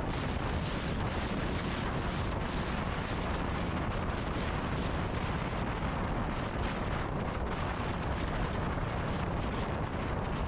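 Steady road and engine rumble of a moving car, heard from inside the cabin, with no pitched tones and no change in level.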